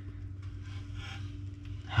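Faint rustling of a cloth bag being handled as baby Argus monitor lizards are let out onto bark-and-moss substrate, over a steady low hum.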